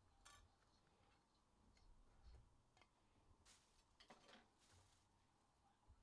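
Near silence, broken by a few faint clicks and rustles of trading cards and their plastic holders being handled.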